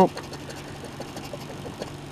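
A small metal wrench scraping the silver coating off a scratch-off lottery ticket in a run of short, irregular strokes, over a steady low hum.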